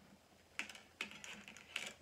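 Paper and a softcover picture book being handled: short crisp rustles and clicks in three brief clusters, about half a second, one second and nearly two seconds in.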